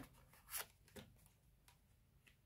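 Faint handling of a tarot card as it is drawn from the deck and laid on the table: two short, soft taps, about half a second and a second in.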